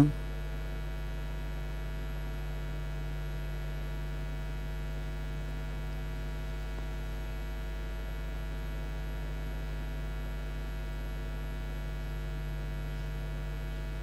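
Steady electrical mains hum: a low buzz with a ladder of fainter overtones, unchanging in pitch and level throughout.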